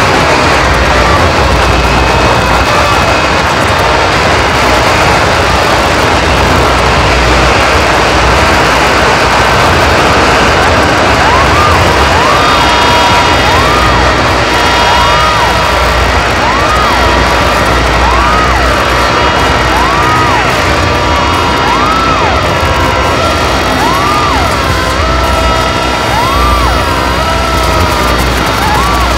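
Loud, dense noise music: a thick wall of distorted noise over a heavy low rumble. About eleven seconds in, a warbling electronic tone joins, swooping up and down about once a second.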